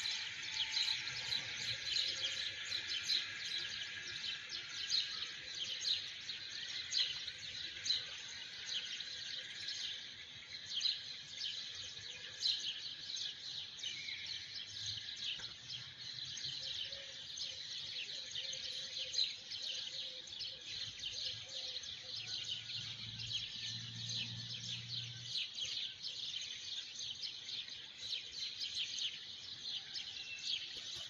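Birds chirping continuously in a dense, high-pitched chorus of rapid overlapping calls.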